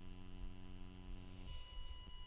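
A person's drawn-out hesitation hum held at one steady pitch, stopping about a second and a half in. Faint constant high-pitched electronic whine tones sound underneath throughout.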